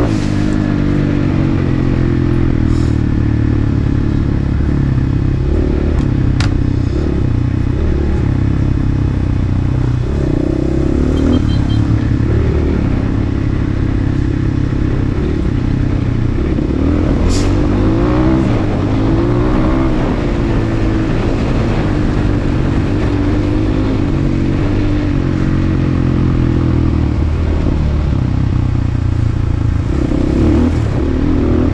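Enduro dirt bike's engine running hard under load over rough ground, the revs rising and falling twice, with a couple of sharp clacks from the bike. It is stuck in second gear and won't shift up, which the rider puts down to a failing clutch.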